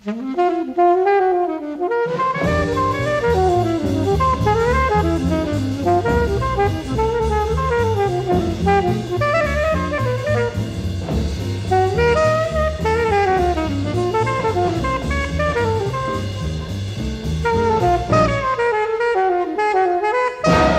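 Alto saxophone playing a flowing jazz solo line, alone for about two seconds before bass and drums come in under it, with the low end dropping away near the end. A 1952 big-band recording.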